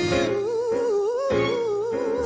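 Male singer holding a long wordless note with even vibrato, after a short upward slide, over backing music.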